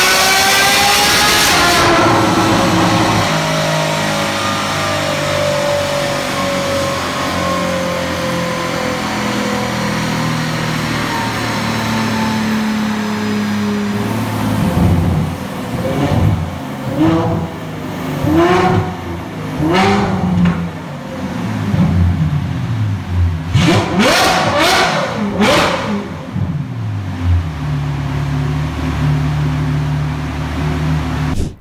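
Ferrari F12's naturally aspirated 6.3-litre F140 V12 on a chassis dynamometer, breathing through an aftermarket exhaust, at the top of a full-throttle dyno pull. The revs then fall away steadily as the car coasts down. From about halfway there are several short blips of the throttle, and it settles to a steady low idle near the end.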